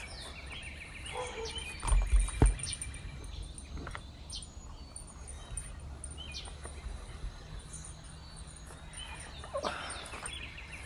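Songbird calls: a quick trill of rapidly repeated notes lasting about a second near the start, another near the end, and a few faint chirps between, over a steady low background hiss. About two seconds in comes a brief low rumble with a sharp knock, the loudest sound.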